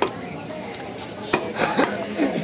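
Butcher's cleaver chopping beef on a round wooden chopping block: one sharp chop at the start, another about a second and a half in, then a quick run of knocks near the end.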